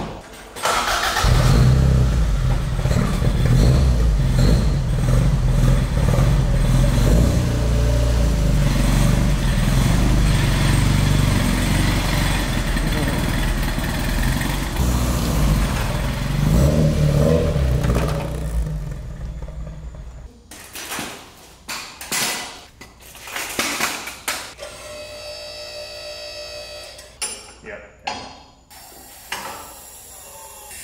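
A Toyota AE86 Corolla's engine starts about a second in and runs loud and steady. After about 18 seconds it fades away as the car drives off, leaving a few separate knocks.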